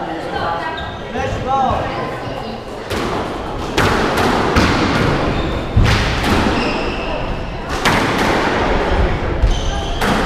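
Squash rally: the ball is struck by rackets and hits the court walls, sharp thuds about once a second from about three seconds in, with voices in the first two seconds.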